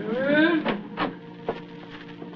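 Radio-drama sound effect of a door creaking open, with a rising creak, then a few sharp clicks of footsteps, over a steady low hum.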